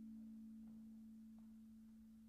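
Low vibraphone notes left ringing after a chord, two pure tones dying away slowly and steadily.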